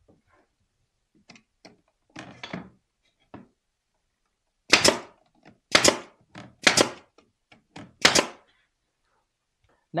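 Nail gun firing nails into cedar picket boards: four loud sharp shots about a second apart, with a few fainter knocks before and between them as the boards are handled and held in place.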